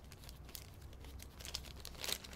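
Faint crinkling of a small clear plastic bag handled in gloved hands, in scattered short rustles.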